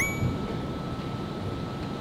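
An editing sound effect: a quick rising whistle right at the start that settles into a faint, steady high tone, over a low background rumble.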